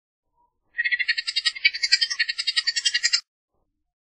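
Bullock's oriole giving its chatter call: a rapid rattle of about ten notes a second, starting just under a second in and lasting about two and a half seconds.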